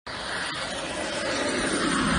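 Fighter jet's engines roaring as it makes a low, fast pass, the roar growing steadily louder as it approaches.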